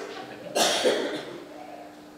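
A single short, sharp cough about half a second in, followed by a faint steady hum.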